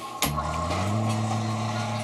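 Liposuction suction machine switching on: a click, then its pump motor hum rising in pitch for under a second and settling into a steady run.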